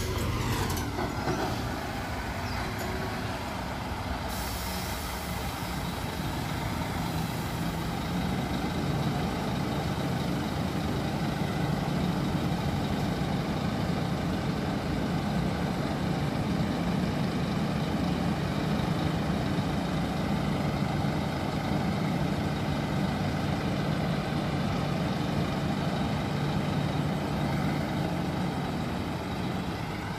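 Scania K360IB coach's rear-mounted diesel engine running steadily as the bus stands in the bay, with a hiss of air from its air brakes about four seconds in that lasts a few seconds.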